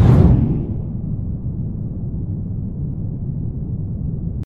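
Logo-intro sound effect: a sweeping whoosh and boom hit right at the start, fading into a steady low rumble.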